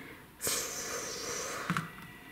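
A breathy exhale, about a second long, starting about half a second in, followed by a faint click.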